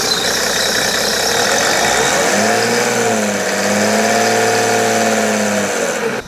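Mercedes W210 E300 Turbodiesel's inline-six turbodiesel running with the typical diesel knock ('Taxinagel'), loud with the bonnet open. From about two seconds in it is given a little throttle, and the engine speed rises and falls twice before dropping back.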